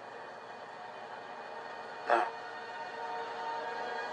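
Soft, sustained background music from a television drama, played through a TV set's speaker, with held notes that do not change.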